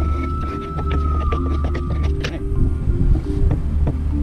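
Background music with a steady bass line, with a thin high tone that fades out about halfway and a few light clicks and knocks.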